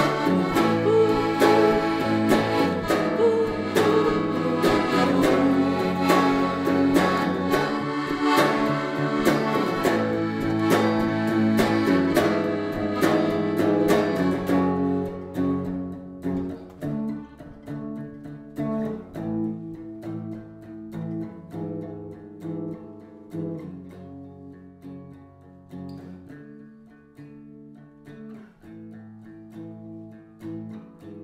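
Live band music: electric guitar and accordion playing loudly together until about halfway, when the sound drops to the electric guitar alone picking quieter chords as the song winds down.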